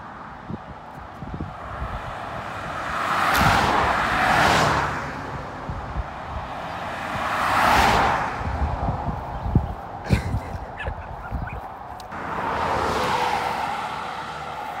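Cars driving past on the road one after another, their tyre and engine noise swelling and fading: twice close together around four seconds in, again near eight seconds, and once more from about twelve seconds. A few light clicks come around ten seconds in.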